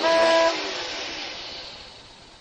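A whistle-like note held for about half a second, then a hiss that fades away.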